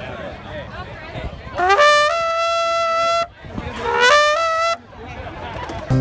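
A bugle blown in two held notes, each sliding up into the same pitch: a long one of about a second and a half, then a shorter one. Outdoor crowd chatter is heard around them.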